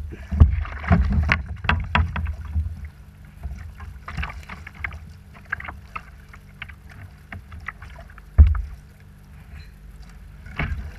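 Irregular knocks, taps and rubbing on a kayak hull, carried into a camera mounted on the boat as the angler shifts his footing and handles a fly rod and line. The knocks are densest in the first few seconds, and there is one loud thump near the end, over a steady low rumble.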